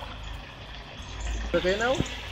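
Low, steady river-water noise as a person swims beside an inflatable raft, with a low rumble on the microphone; a short spoken question comes in near the end.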